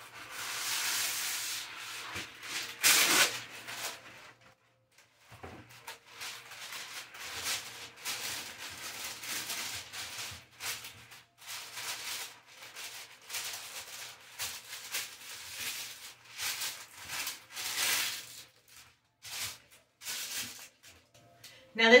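Parchment paper crinkling and rustling as it is torn off the roll and pressed into a metal baking pan, in many short irregular bursts.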